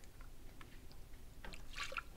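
Apple cider vinegar poured from a plastic jug into a plastic measuring cup, a faint trickle, then tipped into a saucepan of sugar, a little louder near the end.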